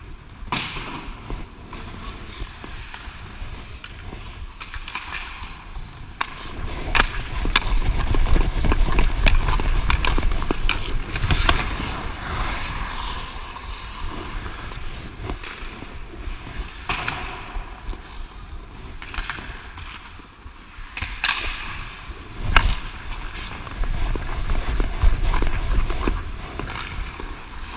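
Ice hockey skate blades scraping and carving on the ice as a skater strides, with a handful of sharp clacks of a hockey stick and puck scattered through. Low rumble from wind and movement on a body-worn camera microphone comes and goes, strongest in two stretches.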